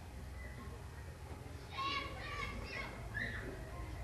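A child's voice, faint and in the background, for about a second and a half in the middle, over a low steady hum.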